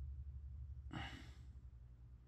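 A single breath out, a short sigh lasting about half a second, about a second in, over a steady low hum.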